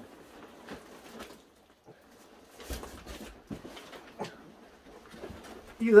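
Large cardboard shipping box being handled, with quiet scattered rustles and light knocks while a cat sits inside it.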